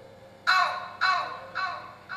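A short pitched electronic sample fired from a Maschine pad controller. It repeats as a fading echo about every half second, three times, each repeat quieter than the last.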